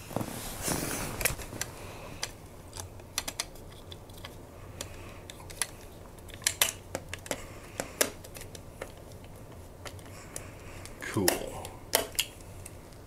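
Small hand screwdriver driving a tiny screw into a plastic model-kit part, with irregular light clicks and taps as the part and tool are handled.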